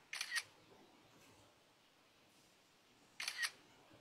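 Two short, sharp double clicks about three seconds apart, one near the start and one about three seconds in, over faint room tone.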